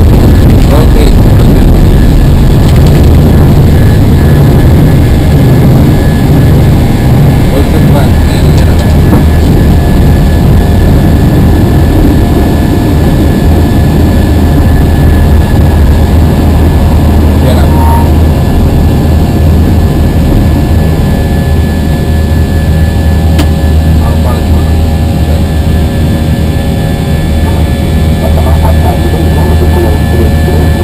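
Airbus A320-family airliner heard from inside the cockpit on takeoff and initial climb: the jet engines run steadily at takeoff thrust under a loud, continuous low rumble and rush of air.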